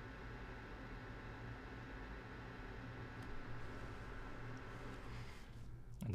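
Small ceramic space heater's fan running faintly on after the heating element has cut out: a steady whir with a thin whine. It stops about five and a half seconds in as the heater shuts itself off at the end of its cool-down run.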